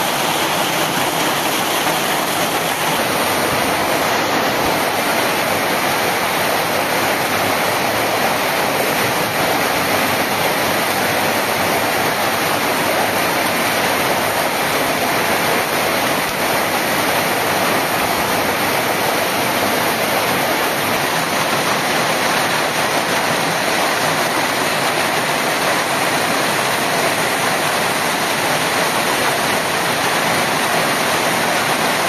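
Heavy hailstorm: hailstones and rain pelting down on the ground in a loud, steady, unbroken rush with no letup.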